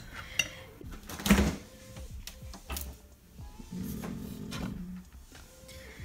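A metal serving spoon knocking and scraping against a ceramic baking dish, with the loudest knock about a second in and a few lighter clicks after it, over soft background music.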